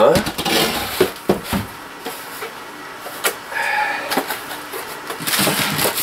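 Unpacking noises: several sharp knocks in the first second and a half and another a little past three seconds as pieces of a Ryobi cultivator are handled and set down, with plastic wrapping rustling near the end.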